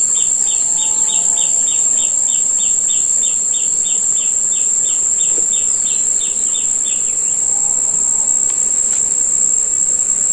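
A steady, high-pitched insect drone runs throughout. Over it, a bird repeats a short chirp about three times a second for the first seven seconds or so, and two faint lower calls come about a second in and near the end.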